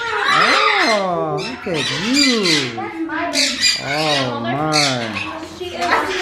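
A voice rising and falling in sing-song glides, mixed with a harsher squawk from a macaw in the first second.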